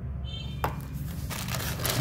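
Crinkling of the clear plastic bag around a packaged cable as hands pick it up out of a foam-lined box, with a single sharp click a little over half a second in.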